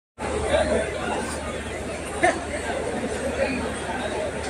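Crowd chatter: many voices talking over each other at once, with a low steady hum underneath and one brief louder sound about two seconds in.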